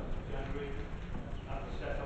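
Indistinct speech, too faint or off-microphone for words to be made out, over a steady low rumble of room and system noise.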